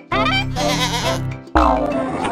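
A cartoon sheep's short, wavering bleat over children's background music. About one and a half seconds in, a loud sudden sound effect with a rising sweep comes in.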